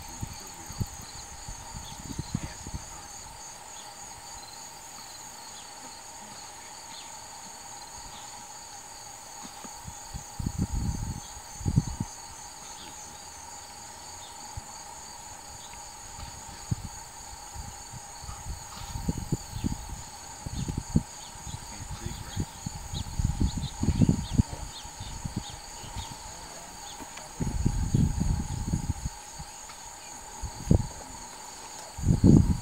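Insects chirping in a steady, high, pulsing drone, with several low rumbling bursts of a second or two, the loudest of them near the end.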